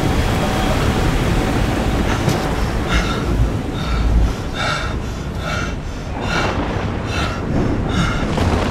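Loud, continuous rumbling noise with a run of short, shrill squealing pulses, about one every two-thirds of a second, starting about three seconds in.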